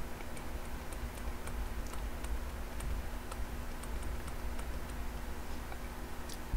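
Faint, irregular clicks of a stylus tapping and writing on a tablet screen, several a second, over a steady low hum.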